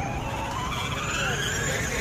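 Electric motors and gearbox of a children's battery-powered ride-on buggy whining, rising steadily in pitch as it picks up speed, over the rumble of its plastic wheels on brick paving.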